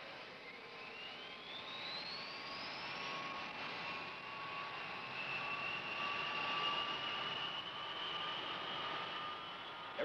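B-52 bomber's jet engines spooling up, a whine climbing in pitch over the first few seconds and then holding steady, with a lower steady tone over broad jet noise.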